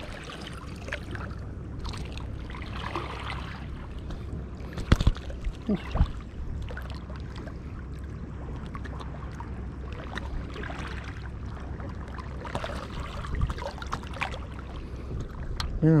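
Wind rumbling on the microphone over water lapping at shoreline rocks, with a few sharp knocks from handling about five and six seconds in.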